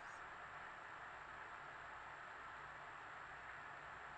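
Near silence: a faint, steady room hiss with no distinct event.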